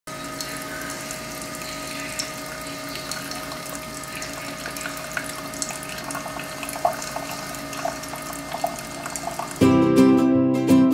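Keurig single-serve coffee maker brewing: a steady hum while coffee pours in a thin stream into a ceramic mug, with small drips and gurgles coming more often toward the end. Plucked-string music starts suddenly just before the end.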